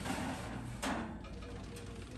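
A metal sheet pan being slid onto a wire oven rack, with a brief metallic clatter about a second in.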